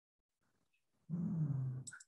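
A short, low vocal sound lasting under a second and falling slightly in pitch, followed at once by a sharp click.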